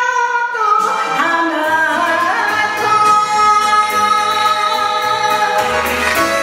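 A woman singing a Japanese kayōkyoku/enka song into a microphone over a karaoke backing track, holding one long note in the second half.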